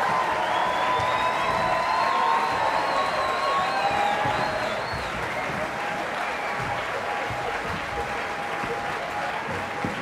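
Audience applauding, with cheers and a long, wavering whistle rising above the clapping in the first five seconds. After that the applause eases a little.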